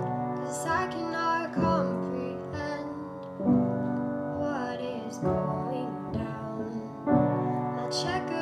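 A woman singing with her own piano accompaniment: a slow ballad with sustained, gliding vocal lines over piano chords that are struck anew about every two seconds.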